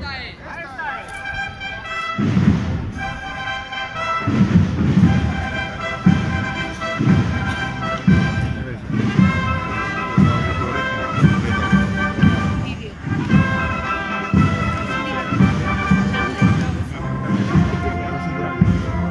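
A wind band playing a slow processional march: a sustained melody over a bass drum beating about once a second, joining in about two seconds in.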